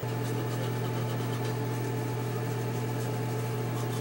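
A steady low mechanical hum with a constant buzzing pitch starts suddenly and holds unchanged.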